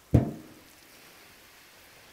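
Steel barrel buckling inward under atmospheric pressure as cold water condenses the steam inside it: one loud metallic bang just after the start, followed by the steady hiss of hose spray on the metal.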